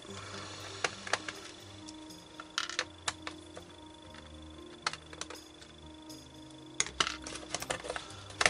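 A small screwdriver turning and unscrewing screws in the plastic underside of a Toshiba Satellite laptop, with scattered light clicks and taps of metal on plastic.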